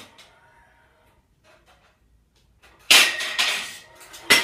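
A 20 kg tri-grip weight plate slid out along a steel barbell sleeve: quiet at first, then about three seconds in a sudden loud metal clank and scrape with a short ring that dies away.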